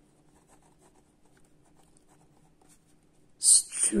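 Pen writing on squared notebook paper: faint, scratchy strokes as words are written out by hand.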